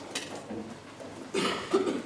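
A sharp knock shortly after the start, then a two-part cough about three-quarters of a second long near the end.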